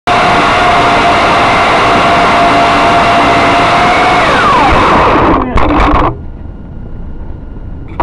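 Small drone's electric motors and propellers running loud and steady with a whine and hiss. About halfway through the whine falls in pitch as the motors spin down, followed by a few clattering knocks, and the noise stops.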